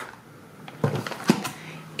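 Multipacks of plastic dessert cups in a cardboard sleeve being handled and set down on a table: a few light knocks and rustles in the middle of the pause.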